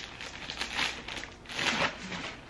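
Clear plastic packaging bag crinkling in two rustling surges as a dress is pulled out of it.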